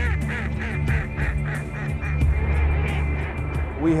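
A flock of ducks calling, a fast run of short quacking calls one after another, over steady background music.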